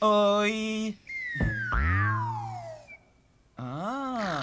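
Cartoon sound effects: a held, wavering tone about a second long, then a long whistle sliding down in pitch over a low hum. After a short pause, a honk-like call rises then falls near the end.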